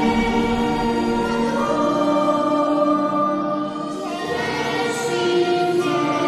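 Voices singing together with a small student ensemble of violins, alto saxophone and recorders, in long held chords that change every second or two, with a brief dip about four seconds in. The music carries the reverberation of a church.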